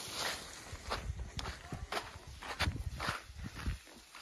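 Footsteps on a soft dirt garden path: a few uneven steps a second, with light scuffs and rustles.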